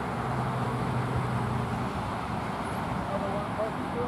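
Steady engine noise from a bucket truck working its boom, with a low hum that stops about halfway through over a constant background rumble. Faint distant voices come in near the end.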